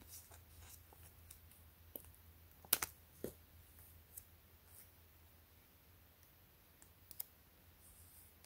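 Faint, scattered clicks and small crackles of fingers peeling an adhesive guide sticker off its paper backing and handling a thin glass screen protector. The strongest are a quick pair of clicks a little under three seconds in, with another pair near the end.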